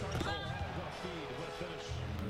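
Faint basketball game broadcast audio: a commentator's voice briefly, over arena sound with a steady held musical note.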